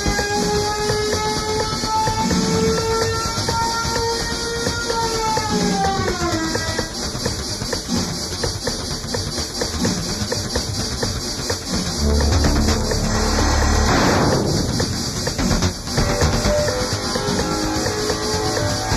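Electronic EBM music from a 1990 experimental cassette. A held tone bends down in pitch about six seconds in over dense percussion. Later a deep bass enters, with a noise swell that rises and falls.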